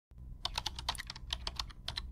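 Typing sound effect: a fast run of keystroke clicks, roughly six or seven a second, over a steady low hum.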